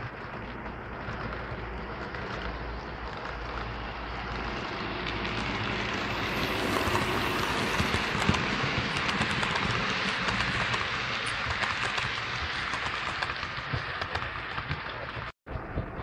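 OO gauge model freight train of EWS wagons running past on the model track: a steady rolling noise with many small clicks from wheels on rail, growing louder to a peak about halfway through and then fading as it passes.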